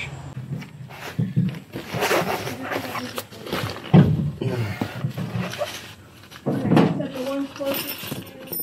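Indistinct talk that the recogniser did not catch, with rustling and handling noises in between.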